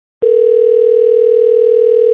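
A single steady telephone tone, loud and unchanging, lasting about two seconds and then cutting off suddenly.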